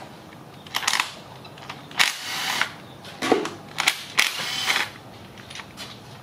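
Cordless power tool running in a few short bursts to back out camshaft bearing-cap bolts on a cylinder head, with sharp metallic clicks and taps between the runs.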